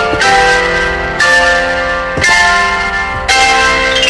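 Piano playing ringing, sustained chords, a new chord struck about once a second.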